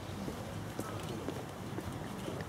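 Outdoor crowd ambience: a steady background hum with faint, scattered voices and light clicks.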